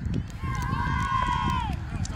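A long, high-pitched yell from a person, held for over a second and dropping in pitch at the end, over low rumbling noise and scattered clicks as the football play gets under way.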